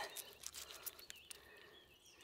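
Very quiet: faint scraping ticks of a fillet knife sawed back and forth between a crappie fillet and its skin.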